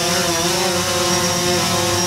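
DJI Phantom 4 Pro quadcopter hovering, its propellers giving a steady, many-toned buzz. The pitch sags slightly and recovers about half a second in as the motors adjust.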